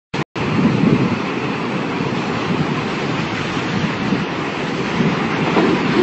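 Steady rushing, rumbling noise with slow swells, the sound effect laid under an animated logo intro, starting after a short blip at the very beginning.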